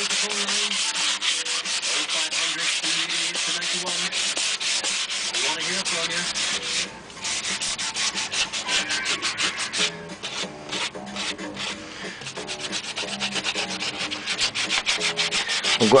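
Sandpaper rubbed by hand in quick back-and-forth strokes along a wooden Telecaster neck, smoothing its reshaped V profile before it is lacquered. The strokes break off briefly about seven seconds in and run lighter for a few seconds after about ten seconds.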